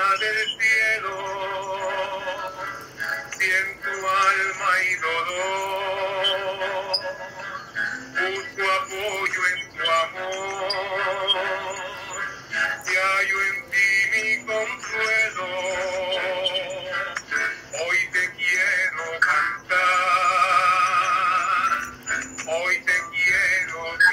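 A man singing a slow hymn in Spanish with acoustic guitar, long held notes with vibrato, heard through a compressed video-call connection.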